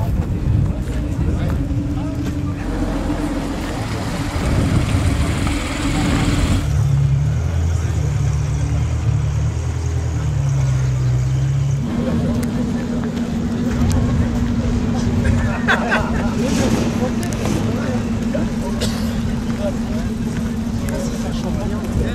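Car engines idling steadily amid crowd chatter, the engine note changing abruptly about 7 seconds in and again about 12 seconds in as one running car gives way to another.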